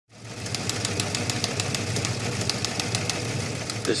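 A steady low mechanical rumble, like an engine running, with rapid even ticks about six or seven a second; it fades in at the start and speech begins at the very end.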